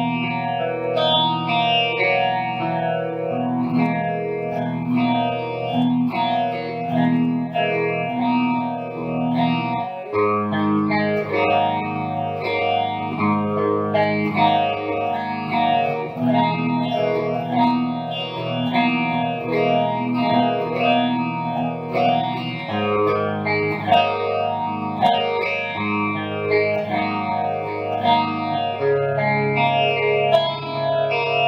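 2016 Gibson Les Paul Standard electric guitar played through an amplifier, ringing chords and melodic lines with the chord changing every few seconds.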